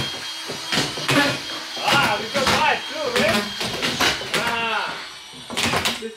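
Men talking, with several sharp knocks mixed in among the voices.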